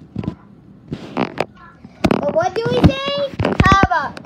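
A child making loud, high-pitched wordless vocal noises with sliding pitch, starting about halfway through, among a few knocks from the phone being handled; the first half holds only short scattered sounds.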